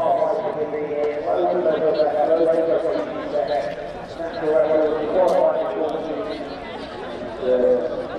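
Indistinct chatter: people's voices talking throughout, too unclear to make out words.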